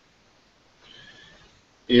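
A quiet pause on a video-call line, broken about a second in by a faint, brief high-pitched whine, then a man starts speaking right at the end.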